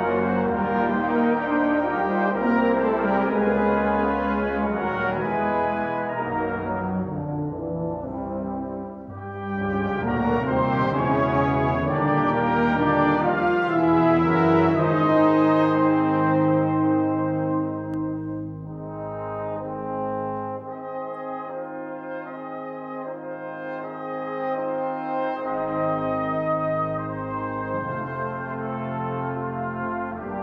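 British-style brass band playing held chords. The sound dips about eight seconds in, builds to its loudest around fifteen seconds, then settles softer after about eighteen seconds.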